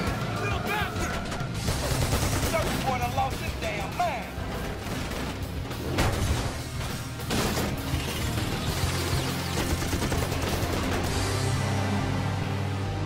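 Action-film soundtrack: a music score under repeated gunfire and sharp impacts, with shouting voices mixed in.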